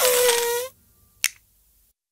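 The cartoon elephant's short trumpeting toot, one held brassy note lasting well under a second, followed by a single sharp click.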